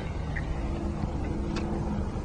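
A low steady hum, as from a small motor, with two faint clicks, the second about one and a half seconds in.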